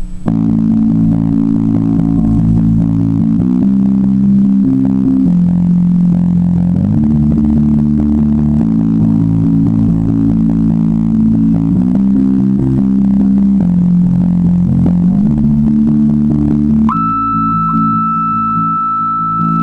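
Indie rock band playing live: sustained organ-like keyboard chords over bass guitar, the chord changing every second or two, with no drums. About a second before the end a single high held note comes in on top.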